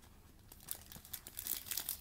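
Clear plastic packaging sleeve crinkling as a packaged keyring is pulled out of a cardboard box tray. It starts about half a second in as a run of small, irregular crackles.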